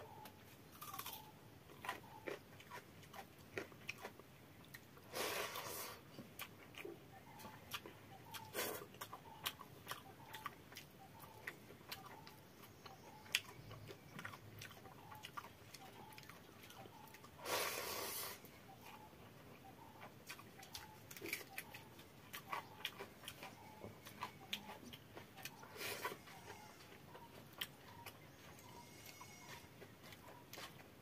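Close eating sounds of a person eating water-soaked fermented rice with fried potato by hand: quiet chewing with many small wet mouth clicks and smacks. Twice, about five and about eighteen seconds in, a louder rush of noise lasting about a second.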